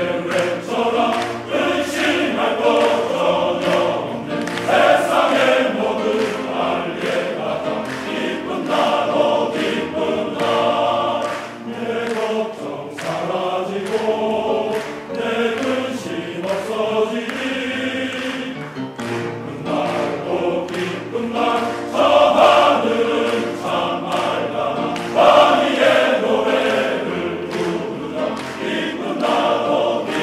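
Large male choir singing in several voice parts, with the sound swelling louder twice in the last third.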